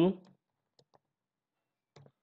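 A few faint computer keyboard keystrokes: two quick clicks close together about a second in and another near the end.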